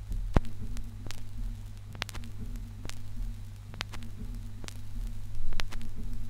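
Turntable stylus riding the run-out groove of a vinyl LP after the music has ended: steady low hum with surface clicks and pops about once a second. A swell of low rumble comes near the end.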